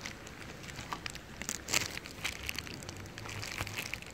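Faint handling noise at a radiator's transmission-cooler hose connector: light crinkling of plastic and scattered small clicks as fingers work the connector's wire retaining clip.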